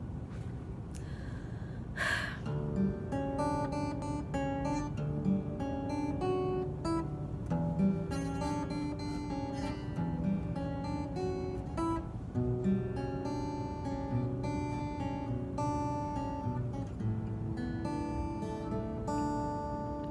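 Taylor acoustic guitar playing the instrumental intro of a song, a run of picked chords that begins about two seconds in.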